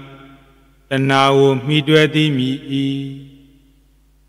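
A Buddhist monk's male voice reciting in a sing-song chant. One chanted phrase begins about a second in and trails off near the end.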